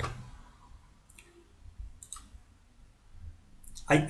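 Two faint computer mouse clicks about a second apart, with little else heard.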